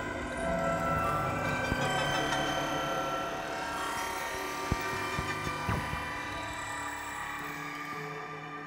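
Live dark-ambient electronic music: a dense layered bed of sustained drones and looped tones from processed string instruments and electronics, with a few short sharp plucked clicks near the middle.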